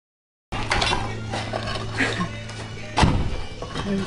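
Demolition site sound starting suddenly half a second in: a few thuds and knocks of concrete debris being handled, the loudest about three seconds in, over a steady low hum and music playing in the background.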